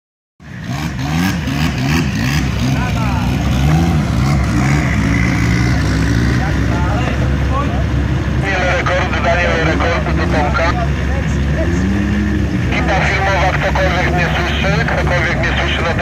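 A vehicle's motor runs with its pitch rising and falling again and again over a steady low rumble. People talk about halfway through and again near the end.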